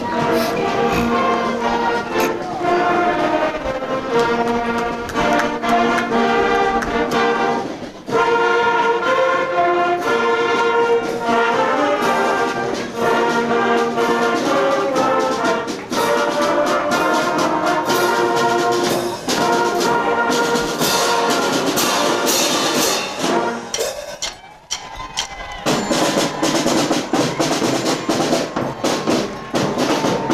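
Middle-school marching band playing as it passes: a flute and brass melody over marching drums, with the drum strokes more prominent in the second half.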